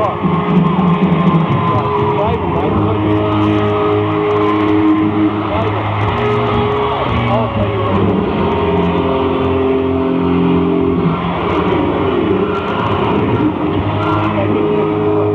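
Live hard rock band playing: held, sustained notes over bass and drums with a few bending guitar-like glides. It is a dull, lo-fi audience bootleg recording with the high end cut off.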